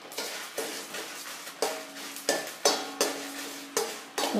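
A slotted metal spoon stirring dry seeds, dal and dried red chillies in a stainless steel pan as the spices dry-roast: a grainy rustle and scraping, broken by about five sharp clinks of spoon on pan.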